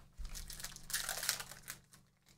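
Plastic wrapper of a 2023 Bowman's Best trading-card pack crinkling and tearing as it is picked up and ripped open, a run of rapid crackles loudest midway and fading near the end.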